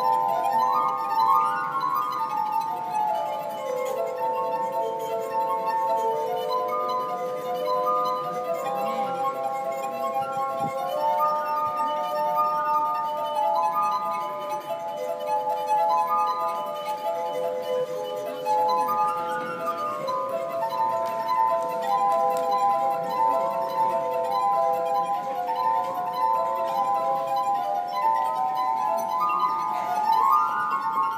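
Glass harp: water-tuned stemmed glasses played by rubbing their rims with the fingertips, several sustained ringing tones sounding together in overlapping phrases that climb and fall.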